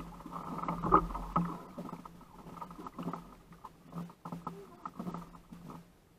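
Hobie Outback kayak on the water: small irregular knocks and creaks from the hull and fishing gear, over a steady low hum, with the loudest knock about a second in.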